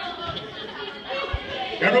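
Indistinct chatter of many voices in a large room, with one brief low thump just past the middle.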